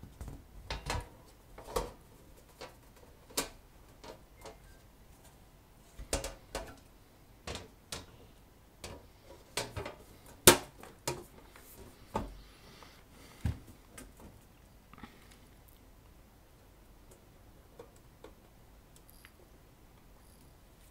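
Irregular clicks and knocks of a black sheet-metal equipment cover being handled and fitted onto the unit's chassis. The loudest knock comes about ten and a half seconds in, and the knocks thin out in the last few seconds.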